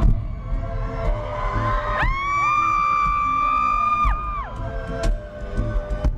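Live acoustic guitar playing with sharp percussive knocks struck on the guitar body, over crowd noise. About two seconds in, two high screams from the audience rise in one after the other and are held for about two seconds.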